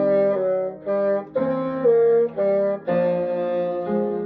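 Bassoon playing a solo melody: a phrase of short detached notes with brief breaks between them, then a longer held note that fades near the end.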